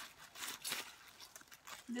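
Plastic wrapping around a new handbag crinkling and rustling as hands handle it, in a few short rustles, the loudest a little before the middle.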